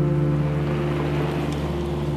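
Background music holding one sustained chord, over a steady hiss.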